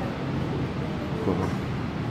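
Steady rumble and hum of a railway station platform beside a stationary double-decker electric passenger train, with faint voices of other people on the platform.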